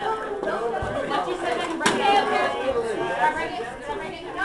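Several people talking over one another, a general chatter of voices, with a single sharp click about two seconds in.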